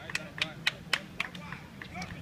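Faint background voices with a string of sharp, irregular clicks, about three or four a second.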